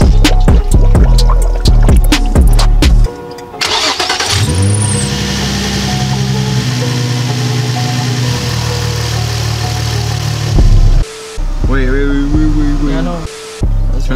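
Music with drum beats, then about four seconds in the 2004 Nissan 350Z's VQ35DE V6 engine is started and rises to a steady idle that runs for about six seconds before cutting off suddenly. The engine is running to draw in coolant and bleed air from the refilled cooling system after a radiator change. Brief speech follows near the end.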